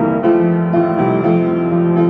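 Grand piano played solo: a hymn tune in full sustained chords, the chords changing several times a second.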